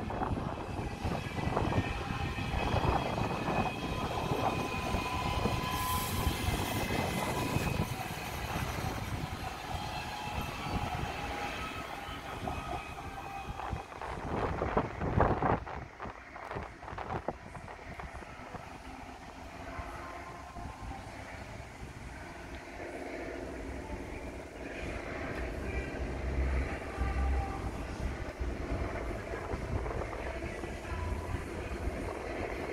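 A DB Class 442 (Bombardier Talent 2) electric multiple unit running past, with steady high tones for the first several seconds. A louder burst of clatter comes around the middle, then the sound dies down as the train moves away.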